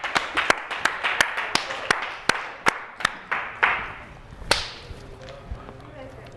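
A person clapping hands: about a dozen sharp claps at an uneven pace, ending about four and a half seconds in.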